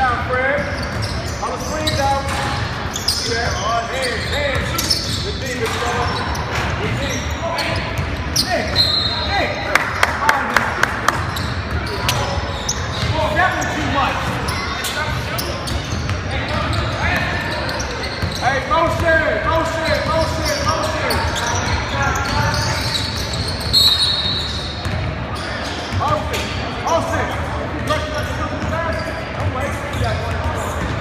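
Echoing gym sound of a basketball game: players and spectators calling out, and a basketball bouncing on the hardwood floor, with a quick run of about five bounces about ten seconds in. A couple of short high squeaks cut through, once about nine seconds in and once near the end.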